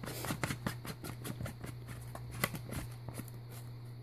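Grey plastic screw cap being twisted by hand onto a Nutrafin CO2 canister: a run of small, irregular clicks and scrapes from the cap and threads, thinning out near the end.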